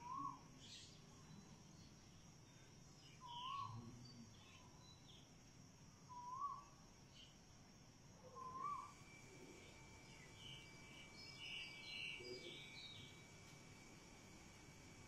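Faint bird calls: a short rising-and-falling note repeated four times, about every three seconds, with scattered higher chirps later on.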